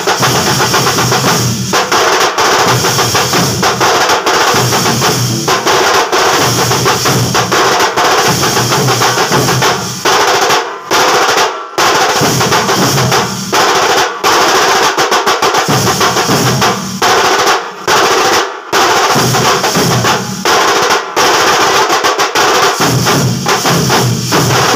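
A loud drum ensemble of large stick-beaten drums playing fast, dense rolls, with clashing brass hand cymbals. The beating breaks off briefly a few times around the middle and starts again.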